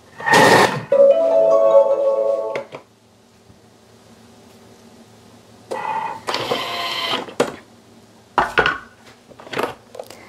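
Thermomix TM6 blending a thick gorgonzola and mascarpone cream at speed 5: a loud start, then a steady motor whine that stops before three seconds in. A second short burst of noise comes about six seconds in, followed by a few light clicks.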